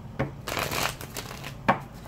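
Legacy tarot deck being shuffled by hand: a brief rush of sliding cards in the first second, with a sharp tap of the deck near the end.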